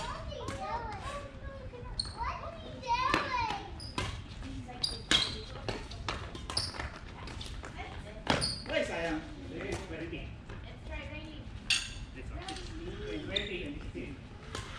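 Badminton rackets striking a shuttlecock: sharp, irregularly spaced smacks ringing in a large hall, with players' voices between them.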